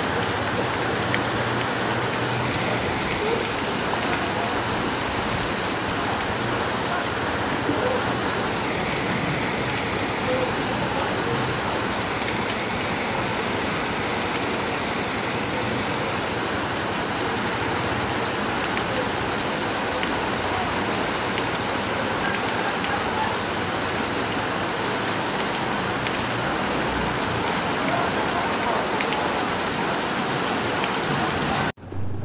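Heavy rain pouring steadily, an even, unbroken hiss of a tropical downpour.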